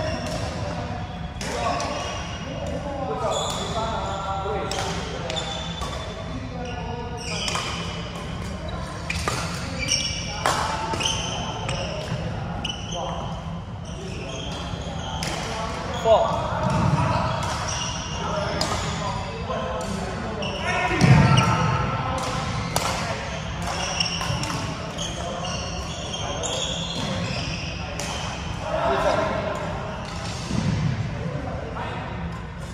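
A badminton rally in a large, echoing sports hall: rackets strike the shuttlecock with sharp pops at irregular intervals, and shoes squeak on the court floor.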